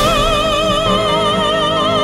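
Female opera singer holding one long high note with a wide, even vibrato over instrumental backing; the note ends near the end.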